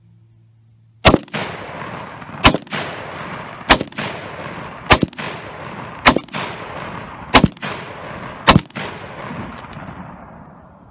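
Seven single shots from a PTR-91, a roller-delayed blowback semi-automatic rifle in .308 Winchester (7.62×51mm), fired at a steady pace of about one every 1.2 seconds starting about a second in. Each crack is followed by a long echo that fades away.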